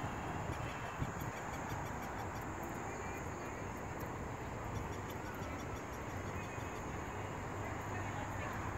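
Steady outdoor night ambience: a low continuous rumble with a constant high-pitched buzz and faint scattered chirps over it.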